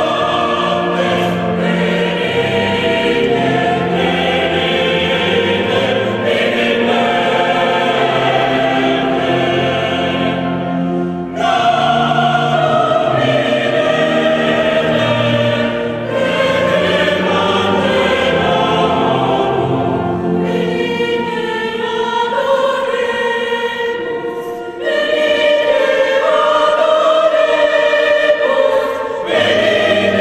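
Choral music: a choir singing slow, long-held phrases with short breaks between them. Low accompanying notes sound under the singing for most of the first two-thirds.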